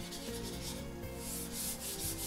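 Felt-tip marker stroking across flip-chart paper on a wall: a few short scratchy strokes as a word is written and underlined, the longest in the second half.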